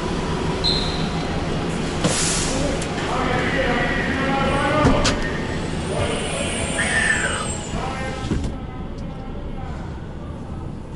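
Enclosed ferry vehicle deck: vehicles running amid the echoing voices of passengers walking between the cars, with a short burst of hiss about two seconds in.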